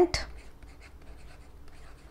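Faint scratching and light ticks of a stylus writing on a tablet. The end of a spoken word, the loudest sound, comes right at the start.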